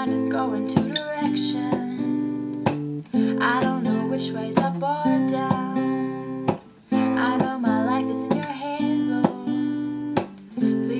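Acoustic guitar strummed in chords under a woman's solo singing voice, an original ballad. The sound drops briefly twice, about three seconds in and near seven seconds, between phrases.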